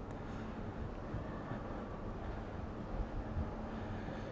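Steady low background rumble on a cruise ship's open top deck, with a faint steady hum underneath.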